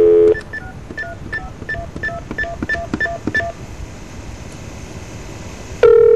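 Telephone dial tone cutting off as about a dozen touch-tone (DTMF) digits are dialled in quick succession. Then a few seconds of faint line hiss, and another steady line tone begins near the end as the call goes through.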